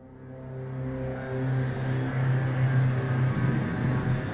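A low, steady drone fades in over the first second or so and holds, with higher tones shifting above it.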